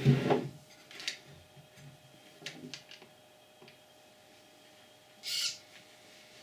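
Hands setting down a 12-volt battery and its cigarette-lighter lead on a wooden table: a knock at the start, then a few light clicks and taps. A short burst of hiss comes near the end, over a faint steady hum.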